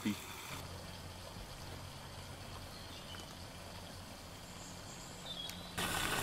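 Oase Profimax 40000 pond pump running, its venturi outlet jetting aerated water into the pond: a faint steady wash of water over a low steady hum.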